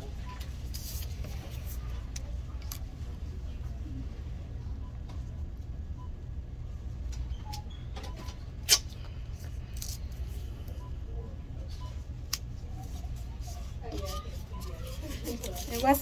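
Steady low background hum with a sharp click about nine seconds in and a smaller one about three seconds later; faint voices come in near the end.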